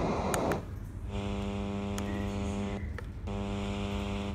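Wooden portable Bluetooth speaker in FM radio mode: a hiss of radio static that stops about half a second in, with a couple of sharp clicks, then a steady electrical buzz from the speaker that cuts out briefly near the three-second mark and returns.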